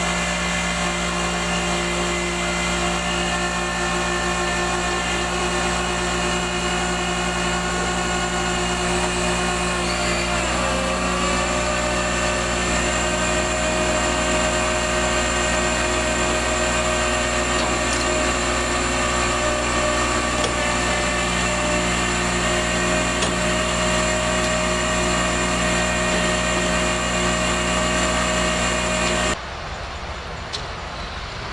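Rollback tow truck's winch whining steadily as it drags a wrecked drag car up the tilted bed by a chain. The pitch dips briefly about a third of the way through as the load changes, then holds until the sound cuts off abruptly near the end.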